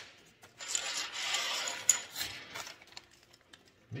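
Small metal fabrication pieces being handled and slid on a metal workbench: a rubbing, rustling sound lasting about a second and a half with a light click near its end, then fainter handling sounds.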